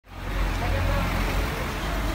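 Roadside street noise: a steady low rumble of traffic with people talking faintly in the background.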